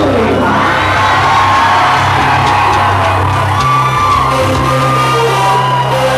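Live industrial metal band holding long sustained keyboard synth and bass tones, with the crowd whooping and cheering.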